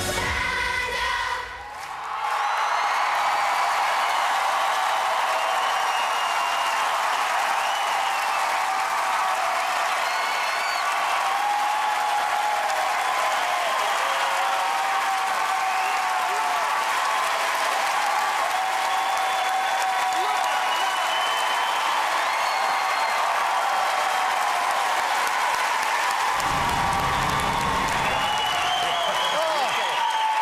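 A choir's last sung note ends about two seconds in, then a large studio audience applauds and cheers, with whoops rising above the clapping. A deep low sound joins briefly near the end.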